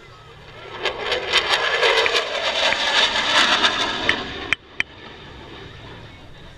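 Military jet making a low pass at an air show: its engine noise swells into a loud rush with crackle and stops abruptly about four and a half seconds in.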